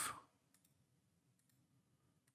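A few faint computer mouse clicks, a close pair about half a second in and a few more in the second half, as anchor points are selected, over near-silent room tone.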